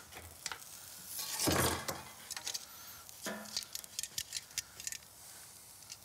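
Scattered clinks and knocks of utensils and dishes being handled at a barbecue grill, with a louder noise about one and a half seconds in.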